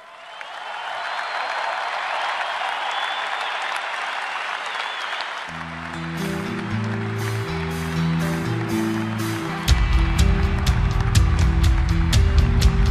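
A stadium crowd applauding and cheering. About five seconds in, music starts over it: drum hits come faster and faster, and the full beat comes in loudly near the end.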